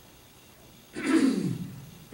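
A person coughs once, about a second in: one harsh cough that drops in pitch as it dies away.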